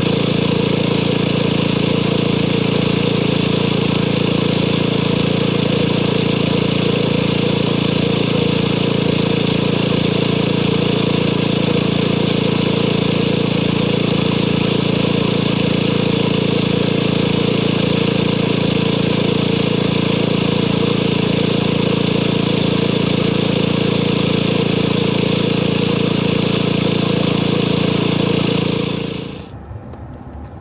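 Small gasoline engine of a hydraulic log splitter running loud and steady at a constant speed.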